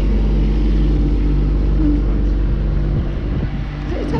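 A vehicle engine running steadily at idle close by, an even low hum that holds without revving.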